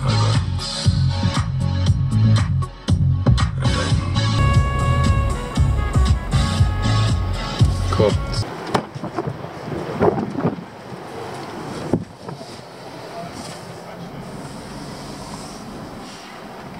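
Music with a heavy, regular bass beat played loud over a car's sound system. It cuts off suddenly about halfway through, leaving only faint, quiet cabin sound.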